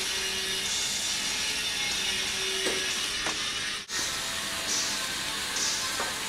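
Small electric motors and plastic gears of Lego battlebots whirring steadily as the robots drive and push each other, with one brief dropout just before four seconds in.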